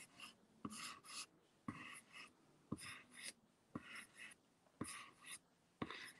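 A pencil drawing lines on the back of a sheet of paper laid over an inked plate for a trace monoprint: faint scratchy strokes, about one a second, each starting with a light tap of the lead.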